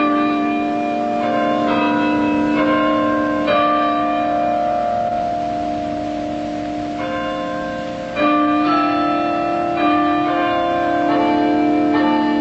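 Tower bells playing a slow melody. Each note is struck and left ringing into the next, with a few seconds in the middle where no new bell is struck and the sound dies away before the strikes resume.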